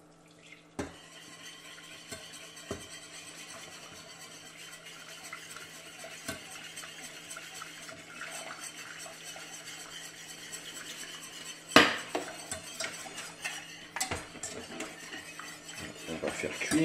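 Wire whisk rattling and scraping against the inside of a stainless steel saucepan as hot milk is whisked into a roux. A sharp metal clank of the pans comes near the end, the loudest sound, followed by a smaller one.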